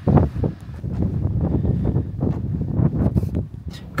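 Wind buffeting the microphone, an uneven low rumble that swells and fades, with a few brief clicks, the clearest near the end.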